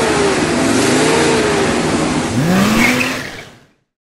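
Car engine revving as a logo sound effect over a rushing whoosh, the engine note wavering then rising once more near the end before the sound fades out.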